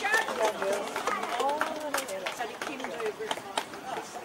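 Indistinct voices of people talking around an outdoor show ring, with a few scattered sharp clicks.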